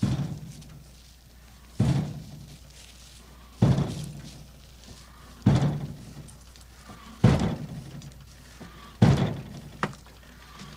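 Heavy banging, six evenly spaced thuds about every second and three-quarters, each dying away briefly, with a smaller, sharper knock just before the last.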